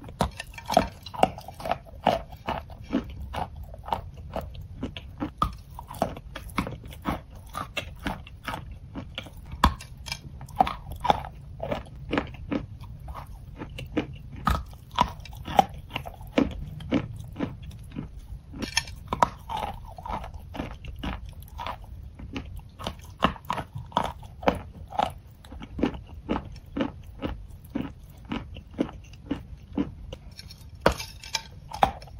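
Close-miked crunching and chewing of chalk: sharp, dry crunches two or three times a second as pieces are bitten off and ground between the teeth.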